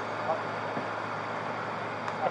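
Steady low hum and hiss of an idling vehicle.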